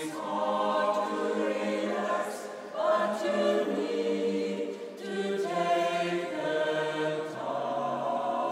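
Mixed choir of women's and men's voices singing sustained chords, with short breaths between phrases about three and five seconds in.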